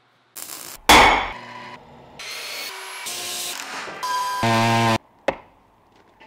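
A quick string of workshop tool sounds cut one after another: a hard metallic hit about a second in, then tool noise with steady humming tones. A loud buzz near the end stops abruptly, followed by a final sharp hit.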